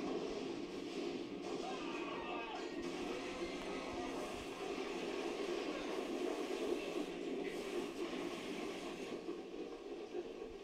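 Film soundtrack playing on a television in the room: steady music with some voices mixed in.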